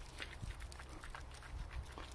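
Faint, irregular rustling and light clicks of a pool net being pushed through shallow puddle water and dry leaf litter to scoop up frog egg masses.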